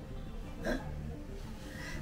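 A woman's single short sob, a catch of breath about two-thirds of a second in, over a low steady hum.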